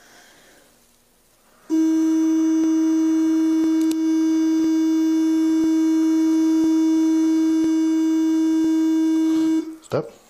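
Breath-alcohol test instrument sounding one steady, loud, buzzing tone while a breath sample is blown into its tube, with faint clicks about once a second. The tone starts a couple of seconds in, falters briefly near the four-second mark, and cuts off shortly before the end when the blowing stops.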